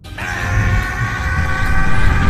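A cinematic intro swell building from silence: a dense rushing noise over a heavy low rumble, with sustained high tones held across it, growing steadily louder.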